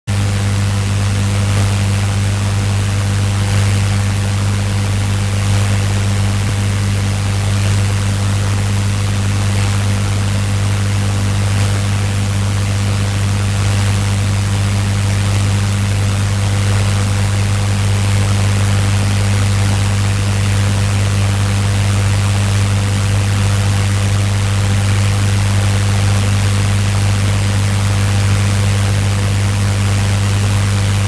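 A steady low hum with an even hiss over it, unchanging in level throughout.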